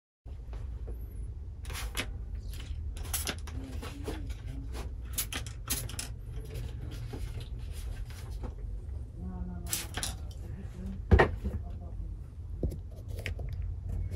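A steady low rumble with scattered clicks and knocks, the sharpest and loudest one about eleven seconds in.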